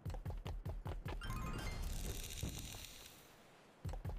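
Online video slot sound effects: a quick run of clicks as the reels spin and drop into place, then a high hiss that fades away by about three seconds in. The clicks start again near the end as the next spin begins.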